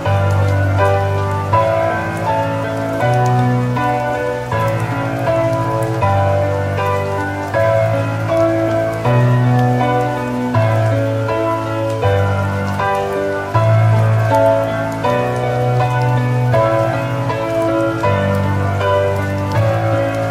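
Calm piano music over a soft, steady rain sound, the low bass notes changing every second or two.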